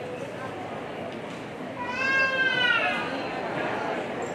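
A single high-pitched cry about two seconds in, rising then falling in pitch over about a second, over a low murmur of voices.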